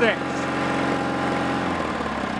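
Kohler M20 opposed-twin engine of a Bolens garden tractor running steadily at half to three-quarter throttle; near the end its note drops as the throttle is pulled back toward idle.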